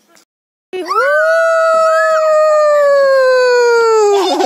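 A young child's long, loud, held vocal cry, rising at the start and then slowly falling in pitch, after a brief cut to silence.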